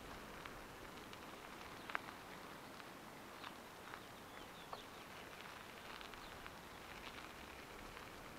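Faint sounds of a bicycle rolling slowly over a dirt and gravel road: a low steady hiss with scattered small clicks and ticks, the sharpest about two seconds in.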